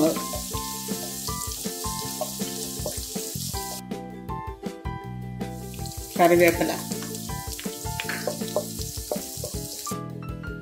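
Garlic cloves sizzling as they fry in hot oil in a wok, with background music underneath. The sizzle drops out briefly just before the middle, and a louder burst comes about six seconds in.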